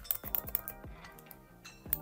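A quick run of sharp clicks from a computer mouse and keyboard, thickest in the first half-second and again just before the end, over faint background music.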